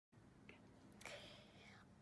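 Near silence with a faint whisper about a second in.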